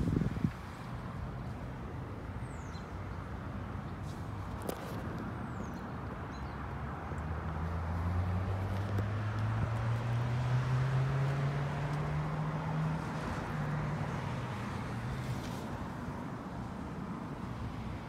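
Chevrolet V8 with Flowmaster mufflers idling with a steady low rumble. Through the middle a louder, deeper engine note swells and rises slowly in pitch, then fades.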